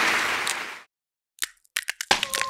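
Audience applause fading out under a second in, then a short silence and a few sharp cracks: a cartoon sound effect of a glass light bulb cracking.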